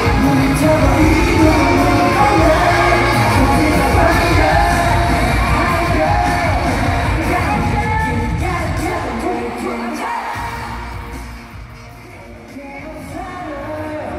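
Live pop music with singing over a heavy bass, amplified through an arena sound system and recorded from within the audience. Around ten seconds in it drops much quieter, then rises again near the end.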